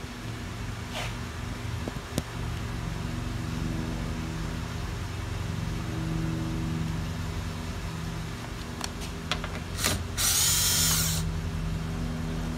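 A cordless drill runs in one short burst of about a second near the end, spinning out the 10 mm bolt that holds the door's key lock cylinder. Before it there is a steady low hum with a few light clicks.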